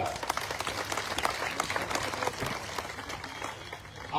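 A large crowd applauding, many hands clapping at once, dying away toward the end.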